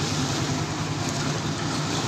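A motor or engine running steadily, a low even drone with no change in pitch.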